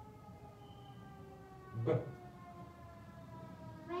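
A long hummed vocal note, held steady and slowly sinking in pitch, with a short spoken 'b' sound cutting in about two seconds in.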